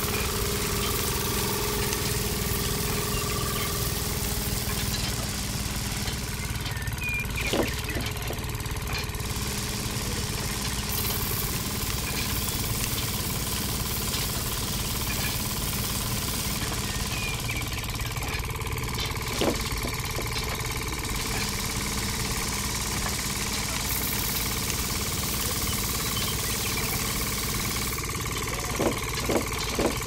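Small motor of a miniature model rice thresher running steadily as its drum spins and strips rice stalks, with a couple of single clicks. Near the end a run of regular knocks, about two a second, sets in.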